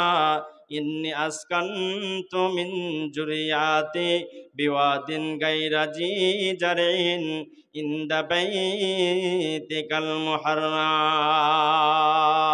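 A man's voice chanting a sermon melodically into a microphone, in sung phrases with wavering held notes and short breaks between them, ending on one long held line.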